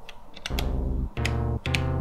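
Synthesizer playing low held notes with a full, rich tone. They are triggered one after another from sequencer pads: the first comes about half a second in and two more follow about half a second apart, each starting with a small click.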